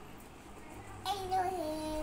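A young girl's voice holding one long, wordless sung note, starting about a second in and stepping down in pitch partway through.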